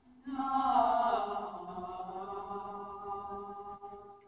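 Mixed choir singing a long held chord that comes in just after the start, swells about a second in, then sinks slightly in pitch and fades out near the end.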